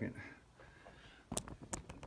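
Quiet room, then three or four sharp clicks and knocks in quick succession about one and a half seconds in: handling noise as the phone camera is moved and set back up on the workbench.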